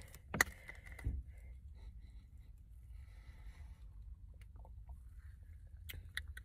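Low steady hum inside a car, with a sharp click about half a second in and a few faint ticks and rustles of handling.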